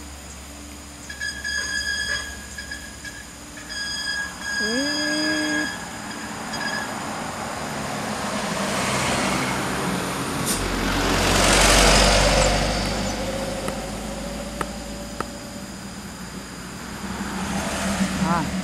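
A heavy truck and a bus working round a mountain bend. Their engine and exhaust noise swells to a broad rush with a deep rumble, loudest about twelve seconds in, then eases to a steadier running note. Early on a steady high-pitched tone sounds twice.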